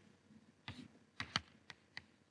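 Chalk writing on a blackboard: a few short, faint taps and strokes of the chalk as letters are written.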